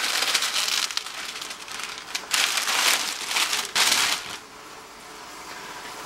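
Masking paper and plastic sheeting crinkling as it is peeled off a freshly painted plastic car interior panel while the paint is still wet. There are two bursts of crackly rustling, the second ending about four seconds in, followed by a quieter stretch.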